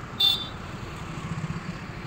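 Street ambience: a steady low rumble of road traffic, with a brief, sharp high-pitched chirp about a quarter of a second in.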